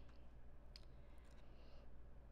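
Near silence: a low, steady room hum with a few faint clicks.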